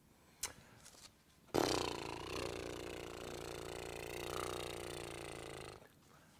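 A man making one long, low, non-verbal vocal sound, held for about four seconds and starting suddenly after a short click: a vocal warm-up noise.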